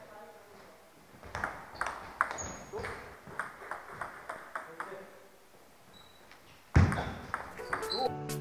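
Table tennis rally: the celluloid-type ball clicking off rubber-faced paddles and the table in a quick, even rhythm of about two to three hits a second. About seven seconds in there is one much louder thump.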